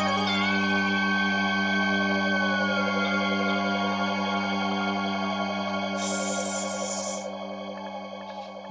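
Progressive-rock recording ending on a long sustained synthesizer chord that slowly fades, with a held lead tone that bends slightly down about a third of the way through and a short hiss near the end.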